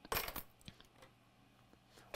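A few light metallic clinks in quick succession, followed by two faint ticks.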